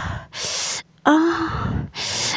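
A person's voice gasping for breath: a loud rushing breath, then a short pitched 'ah' cry about a second in, followed by another breath.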